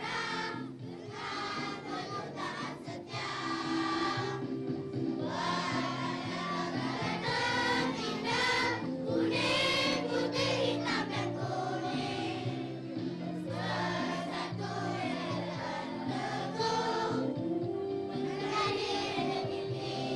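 A choir of young schoolchildren singing a patriotic song together into microphones, over a steady musical accompaniment.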